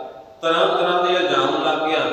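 A man's voice chanting into a microphone on long held notes, breaking off briefly about half a second in before holding a long note again.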